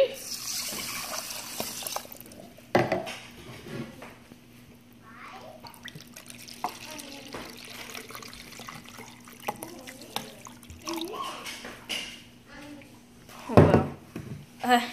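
Water poured from a plastic measuring jug into a metal pot of rice, then a tap running into the jug as it is refilled for the next cup. There is a sharp knock about three seconds in and a louder splash of noise near the end.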